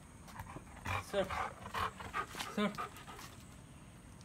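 Yellow Labrador Retriever making short playful vocal sounds during ball play, mixed with a man's brief calls. The sounds come as a quick run of about six short bursts from about a second in to near three seconds.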